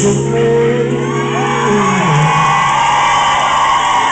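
Loud live R&B concert music filling a large hall, with long held notes for the first couple of seconds, and the crowd shouting along.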